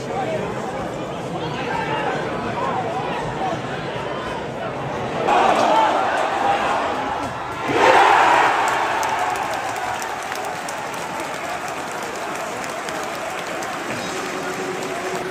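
Football crowd in the stand, a steady din of voices with some singing, swelling about five seconds in and then breaking into a sudden loud goal cheer about eight seconds in that slowly dies down.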